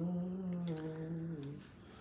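A man humming one long, low note that dips slightly in pitch partway through and stops about one and a half seconds in.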